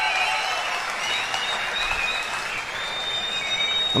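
Large audience applauding steadily, with a faint thin high tone over it in the last second or so.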